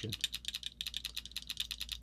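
Electronic paintball marker dry-firing in ramp mode, its solenoid clicking in a fast, even run of about ten shots a second. The eyes are in malfunction, and the board falls back to its capped rate of 10 balls a second but still ramps.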